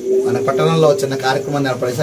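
A man speaking Telugu in a crowd of people, with a steady low tone held under the speech for the first second or so.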